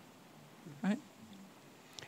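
A pause in the talk with low room tone, broken a little before a second in by one short, rising vocal sound, a brief 'hm' from a person.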